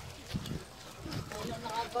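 People talking, with a laugh near the end, over a few irregular dull knocks.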